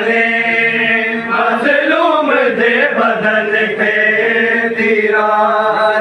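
Many men's voices chanting a noha, a mourning lament, together in a drawn-out melody whose pitch rises and falls, steady and loud with no break.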